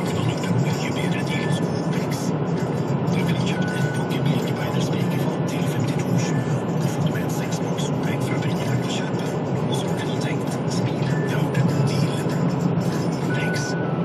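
Car driving at highway speed, heard from inside the cabin: steady tyre and engine noise with a deep hum.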